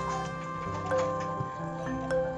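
Background music: a melody of sustained, pitched notes, a new note starting about every half second.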